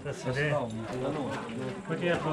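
Indistinct speech from people close by, with no other clear sound standing out.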